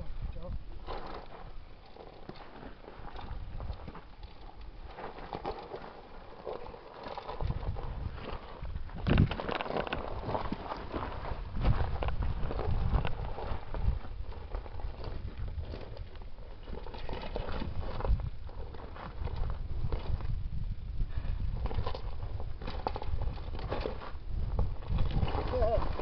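Dirt bike being walked down a bare rock slope: boots and tyres scuffing and knocking irregularly on the rock, over a low rumble that builds from about seven seconds in.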